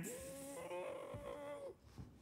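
A man's voice holding one slightly rising, wordless tone for about a second and a half, a vocal sound effect for a ship's helm being swung round.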